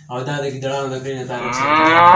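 A long, loud moo whose pitch rises through its second half and breaks off abruptly.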